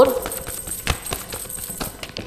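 A tarot deck being shuffled by hand: a run of light card clicks and flicks, the sharpest about a second in, until a card jumps out of the deck.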